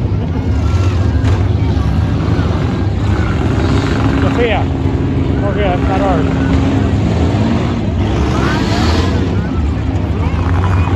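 Several demolition-derby minivan engines running and revving together in a dense, steady rumble, with a spectators' voices and short shouts over it.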